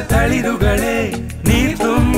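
Film song: a sung melody with bending pitch over a band backing with a regular beat.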